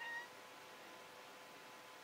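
A black domestic cat gives one short, faint meow at the very start, followed by near silence.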